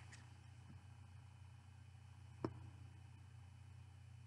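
Near silence: room tone with a steady low hum, broken by one short click about two and a half seconds in.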